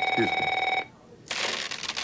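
A held, bell-like ringing tone that cuts off sharply under a second in, with a short vocal sound over it. After a brief silence, a hissing, rustling noise begins.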